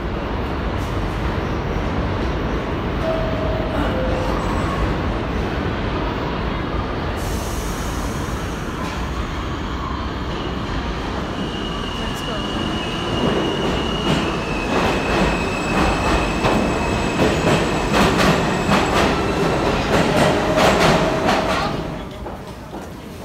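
New York City Subway trains at a station platform: a steady rumble as one train runs past, then an arriving R train with a high, steady squeal and a rapid clatter of wheels over the rail joints. The clatter grows louder until it stops near the end, as the train comes to a halt.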